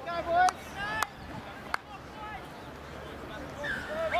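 Rugby players shouting short, high calls in the first second as the lineout sets up, then quieter field ambience with a single sharp click near the middle and another brief shout near the end.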